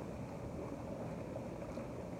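Running hot tub: water churning from the jets, a steady low rushing noise.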